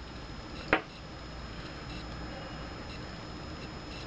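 A single short, sharp click about three-quarters of a second in as a glass perfume bottle is handled, over steady low room hiss.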